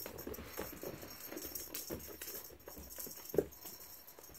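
Cat scampering and pouncing on carpet: soft, irregular paw thumps and scuffles, with one louder thump about three and a half seconds in.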